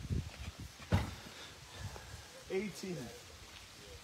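A person doing burpees on a grass lawn: low thuds of the body going down and up, with one sharp thump about a second in.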